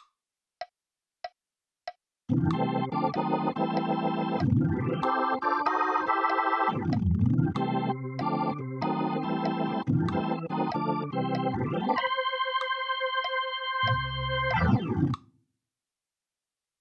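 Nord Stage 3 playing a Hammond B3-style drawbar organ sound: three soft metronome clicks count in, then a C6 to D minor 7 to D-sharp diminished 7 to C6 chord lick walks up and back in time. A chord is held near the end, and the playing finishes with a quick glide and stops about a second before the end.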